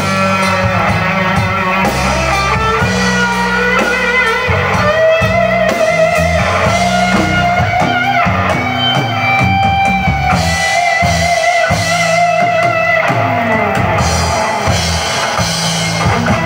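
Live band playing with guitar and drum kit, no vocals; a lead line holds long, wavering notes through the middle.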